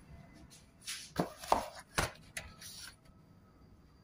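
A handful of short knocks and rustles over about two seconds, starting about a second in: handling of the freshly baked pizza on its foil-lined tray.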